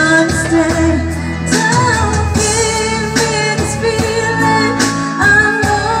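Karaoke backing track of a pop ballad playing over home stereo speakers, with a steady beat, while a woman sings along with the melody.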